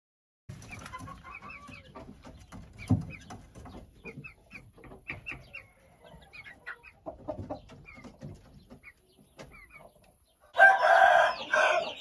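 Young Thai game chickens peeping and clucking, with a single knock about three seconds in. Near the end comes a loud crow lasting about a second, typical of a young cockerel.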